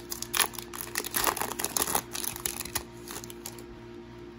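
Foil wrapper of a Topps Chrome trading-card pack being torn open and crinkled, and the cards slid out: a run of crackles and rustles that dies away near the end.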